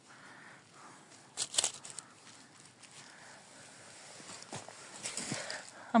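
Dry pine needles and fallen leaves on the forest floor rustling and crunching as they are disturbed, with a short burst of crackling about a second and a half in and a softer rustle near the end.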